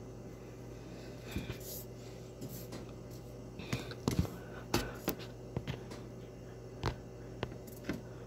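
A kitchen oven running with a steady low hum, with scattered short clicks and knocks, the loudest a few in the middle.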